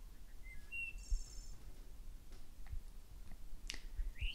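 A few faint bird chirps early on over a low outdoor rumble, with a soft thump about a second in and a few faint clicks later.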